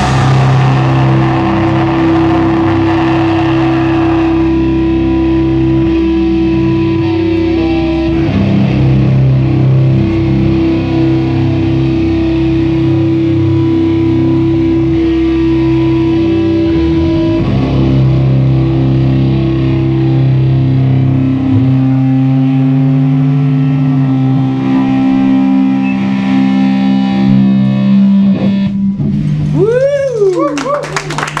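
Loud, distorted electric guitar holding long droning chords that change pitch every few seconds, with the drums silent: the ringing outro of a live sludge/crust song.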